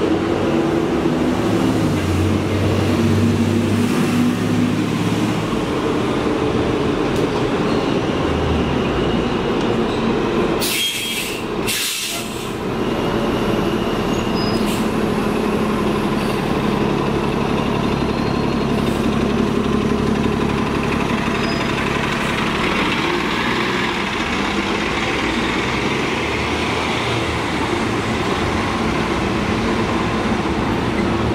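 New Flyer XD40 Xcelsior city bus's diesel engine running steadily at a stop, with two short hisses of air about a third of the way through. It keeps running as the bus pulls away from the stop.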